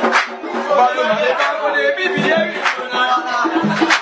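Live music: voices singing over a percussion-driven accompaniment, with a sharp stroke about every 1.3 seconds.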